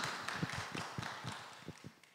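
Scattered clapping from a small audience, a few irregular claps a second, fading out to silence.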